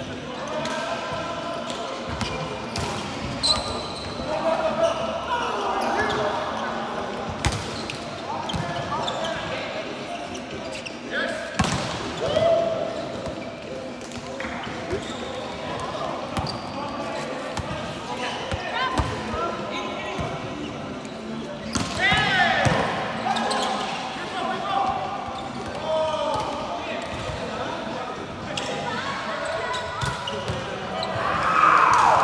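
A volleyball being struck and bouncing on a hard sports-hall floor every few seconds, with players' voices calling and chatting indistinctly across a large echoing hall.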